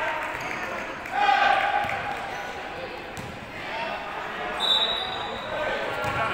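A basketball bouncing on the court during a children's game, amid children's and adults' voices calling out, the loudest about a second in. A brief high-pitched squeak sounds near the end.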